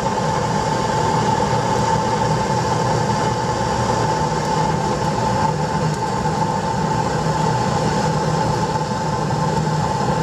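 Home-built waste oil burner running steadily on forced air: a constant motorised hum from the air blower with the rush of the burning fuel underneath. It is just catching on the waste oil after a wood preheat.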